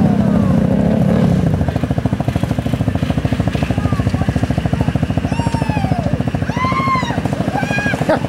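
ATV engine running with a fast, even pulsing beat, louder for the first second and a half and then settling. High-pitched shouting voices come in over it in the last few seconds.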